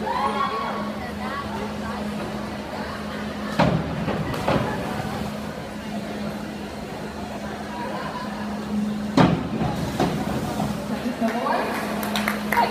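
Echoing indoor pool-hall ambience: a murmur of voices and chatter over a steady low hum. A few sharp knocks ring out, about three and a half, four and a half and nine seconds in.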